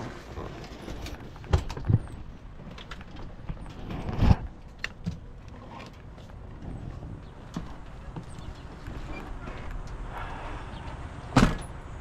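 Knocks and thumps from handling a truck's open cab door and seat belt while getting in and out, the loudest about four seconds in and another near the end, over a steady low rumble.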